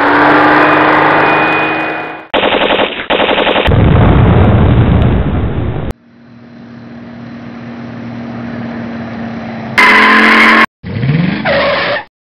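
A run of dubbed war-film sound effects: an engine running, then a rapid burst of machine-gun fire about two seconds in and a loud, heavy blast. A car engine then rises as it approaches, ending in short loud tyre squeals.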